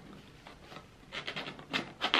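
Fingers handling a cardboard firework box at its lid edge: a quick cluster of short rubbing and scraping sounds about a second in.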